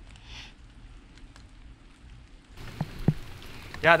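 Quiet light rain dripping in a forest, with faint scattered drops. There are two soft knocks about three seconds in, and a man says "yeah" at the very end.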